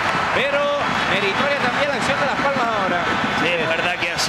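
Speech: a male television commentator talking over the steady background noise of a stadium crowd.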